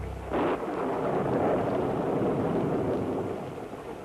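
Rumbling roar of aerial bombing in archival war film. A loud noisy rush starts suddenly just after the beginning, carries on steadily and eases slightly near the end.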